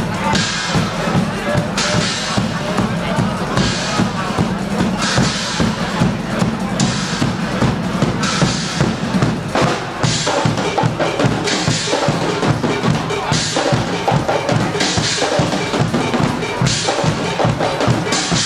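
Guggenmusik percussion section playing a drum rhythm: bass drums and snare drums, with bright crashes every second or so.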